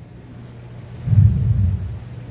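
A muffled low rumble, under a second long, about a second in, over a steady low hum.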